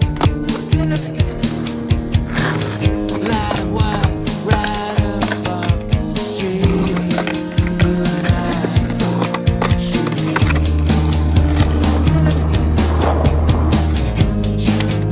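Music track with a skateboard on concrete mixed in: wheels rolling and the board clacking as it pops and lands during flip tricks. A deep, steady bass note comes into the music about two-thirds of the way through.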